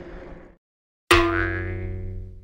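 Comic 'boing'-style sound-effect sting: a single struck, ringing note that starts suddenly about a second in and dies away over about a second and a half.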